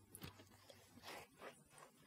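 Faint footsteps on a dirt path: a few soft, slow steps about half a second apart, over near silence.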